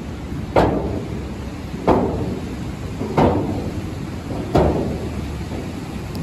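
Four sharp knocks, evenly spaced about 1.3 seconds apart, from walking across a steel footbridge, over the steady rush of a river below.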